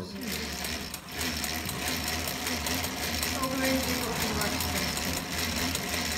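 Old Singer treadle sewing machine, converted for Al Aire embroidery, running steadily as it stitches through fabric: a fast, even clatter of needle strokes, slackening briefly about a second in.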